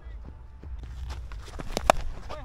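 Footsteps of a cricketer running between the wickets, heard through a body-worn action camera with low wind rumble, and one sharp click near the end.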